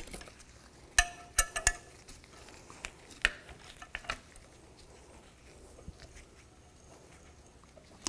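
Steel wrench and nuts clinking against the cast flange of a catalytic converter as a stud is threaded into it and a wrench is set on its double nuts. There is a cluster of sharp clinks about a second in, and a few more around three to four seconds in.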